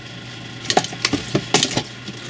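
A few sharp plastic clicks and cracks, about a second in, as a heat-softened headlight lens is pried away from its housing along the Permaseal seam.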